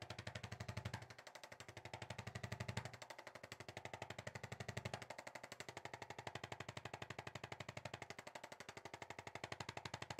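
Handheld electric percussion adjusting instrument tapping rapidly and evenly against the upper back and neck. The taps come in stretches of about two seconds with a deeper thud, turning lighter after about five seconds in.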